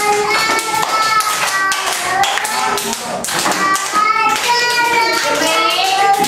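Children singing a song while hands clap along in a steady rhythm.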